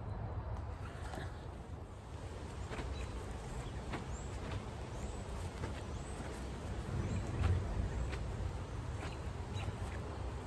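Quiet outdoor ambience: a low steady rumble with faint, scattered bird chirps. No sword strike stands out.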